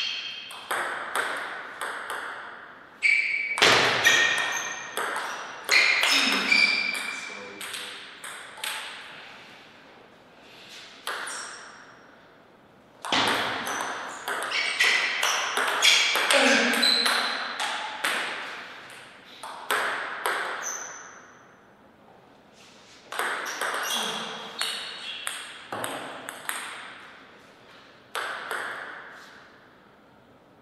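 Table tennis rallies: the ball clicking off rubber paddles and bouncing on the table in quick exchanges, with three rallies separated by short pauses.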